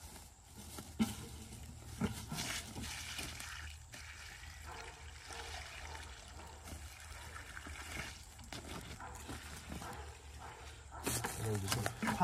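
Water poured from a five-gallon plastic bucket onto a pile of wood chips, a steady splashing pour lasting several seconds, with a knock of the bucket about a second in.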